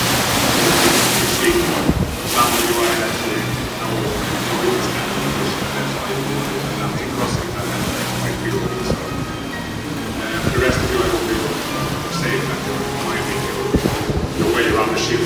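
Wind gusting across the microphone, with indistinct voices and music underneath. The gusts are strongest near the start and again near the end.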